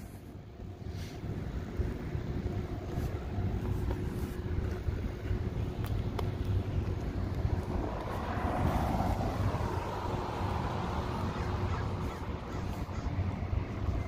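Outdoor street ambience: a low rumble of wind on the phone's microphone with traffic noise, a vehicle swelling and fading about eight to ten seconds in.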